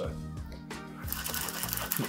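Metal cocktail shaker tins shaken hard without ice for a reverse dry shake, the egg-white sour rattling inside; the shaking starts about a second in.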